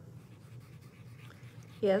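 Faint scratchy rubbing of a cotton swab working soft pastel chalk into cardstock.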